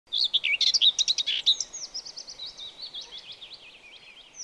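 Birds singing: a dense flurry of quick chirps in the first second and a half, then a run of short falling whistled notes that fades away.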